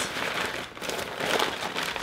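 Brown paper bag rustling and crinkling as a hand rummages through it, the bag full of small condiment packets.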